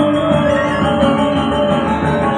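Balinese gong kebyar gamelan playing: bronze metallophones and gongs ring in a dense run of rapid strokes over sustained ringing tones.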